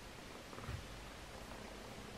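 Faint room hiss with soft handling noise as a plastic teeth-whitening mouth tray is pushed into the mouth, with a low soft thump about two-thirds of a second in.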